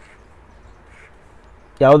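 Faint strokes of a highlighter pen across paper over low steady hiss, then a man's voice starts near the end.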